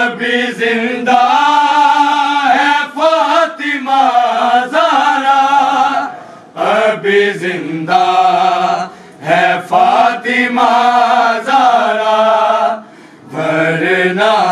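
A man's voice chanting a Shia mourning lament in long, melodic, wavering phrases, with short breaks for breath about six and thirteen seconds in.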